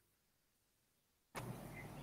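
Complete silence, then about a second and a half in a faint steady hiss with a low hum begins: the room noise of a call participant's microphone being unmuted.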